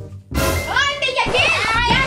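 A young girl's voice and laughter over cheerful background music, starting about a third of a second in.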